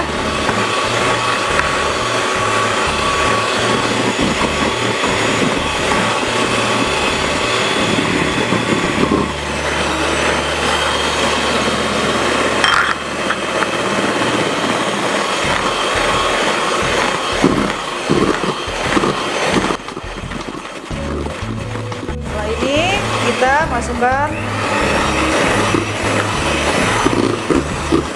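Electric hand mixer running steadily, its beaters whirring through thick cake batter in a stainless steel bowl as chunks of fermented cassava are beaten in.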